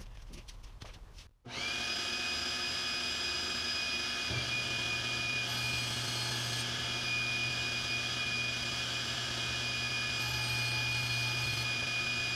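Powermatic 66 cabinet table saw started about a second and a half in, then running steadily with a high, even whine. About three seconds later a deeper steady hum joins and holds.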